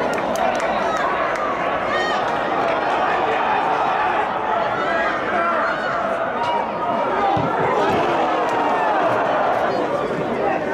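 Many indistinct voices shouting and calling over one another in an indoor football hall, steady throughout, with a few short sharp knocks.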